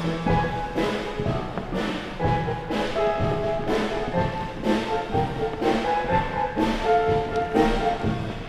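Instrumental background music with a steady beat about once a second and held instrument notes over it.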